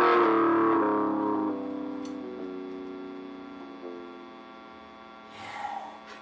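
Electric guitar's closing chord ringing out and slowly dying away, a few of its notes shifting as it fades. A brief breathy noise comes near the end.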